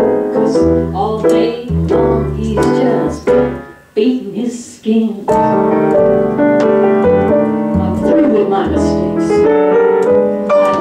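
Live jazz trio-style performance: a woman singing over piano and upright bass, with sustained piano chords filling the second half.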